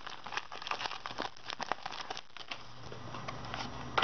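Foil wrapper of a Pokémon trading card booster pack crinkling as it is handled and opened. The crinkling is densest for the first two and a half seconds, then dies down to a few small ticks.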